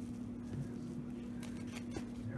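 Faint rustling of a disinfectant wipe being unfolded by hand, with a few soft handling sounds near the end, over a steady low hum.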